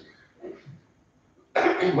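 A pause in a man's lecture with a short, soft throat-clearing about half a second in; his speech starts again about one and a half seconds in.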